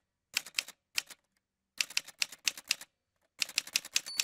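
Typewriter keys clacking: a few separate strokes, then two quick runs of several keys in the second half.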